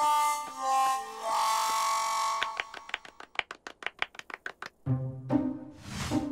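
Cartoon soundtrack: a short melodic phrase of held notes, then a quick run of sharp tapping clicks, about eight a second, then bass-heavy jazzy music starting near the end.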